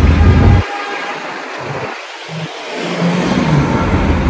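City street traffic noise. A heavy low rumble drops away about half a second in and comes back near the end, with faint steady engine hum in the gap.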